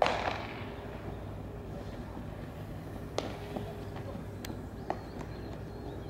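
Baseball practice: a sharp crack right at the start that rings out briefly, typical of a ball struck by a bat or slapping into a glove, followed by a few lighter clicks and knocks over steady background noise.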